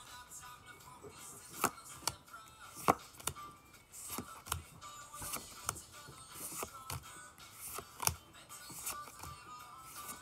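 Pokémon trading cards being handled and flipped from one hand to the other, with a few sharp card flicks, the loudest about one and a half, three and eight seconds in, over faint background music.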